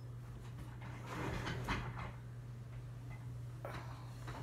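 Soft rustling of a person moving about, with a light click about a second and a half in, over a steady low hum.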